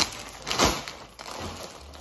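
Plastic mailing bag rustling and crinkling as it is handled and pulled open, with two sharp crackles: one at the start and one just over half a second in.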